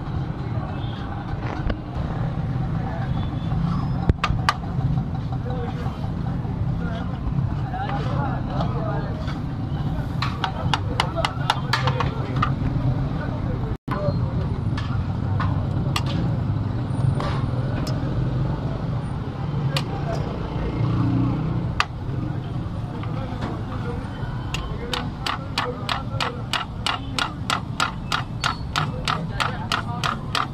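Metal spatula chopping chicken on a flat iron griddle: a rapid, even clacking of several strikes a second, strongest in the last few seconds and in a short run earlier. Voices and a steady low street rumble carry on underneath.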